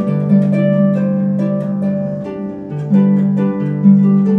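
Concert harp being played, plucked melody notes and chords ringing over sustained bass notes.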